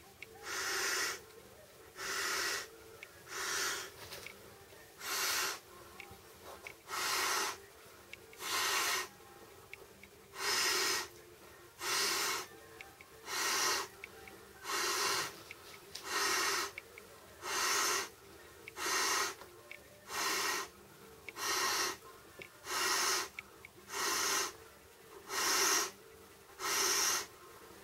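A person blowing into an Intex air bed's valve by mouth: a steady run of noisy breaths, about one every second and a half.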